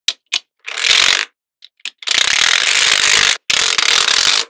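Magnetic balls clicking and clattering as strands of them are snapped onto a magnet-ball wall: two single clicks, a short rattle about a second in, then a long rattling run of clicks from about halfway, with a brief break near the end.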